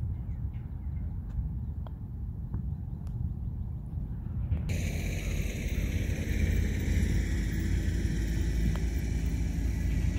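Steady low outdoor rumble with no voices, turning brighter and hissier all at once about halfway through; a few faint light ticks in the first half.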